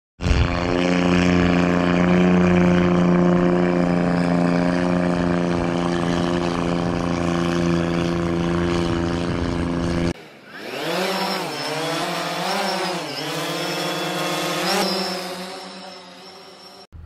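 An engine running at a steady, unchanging pitch for about ten seconds, then an abrupt cut to an intro sound effect: a whine that sweeps up and down in pitch several times.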